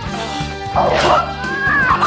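A fighter's high-pitched, yelping battle cries that swoop up and down in pitch, set over the film's background score. The cries come loudest in the second half.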